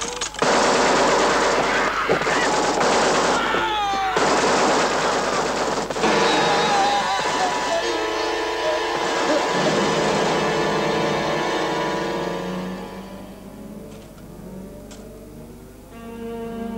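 Automatic gunfire in long bursts with short gaps, for about the first six seconds. Then held orchestral-style music tones take over and fade away toward the end.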